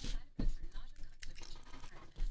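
Plastic shrink wrap on a sealed trading-card box crinkling and rustling as the box is handled, with a few sharp clicks and knocks.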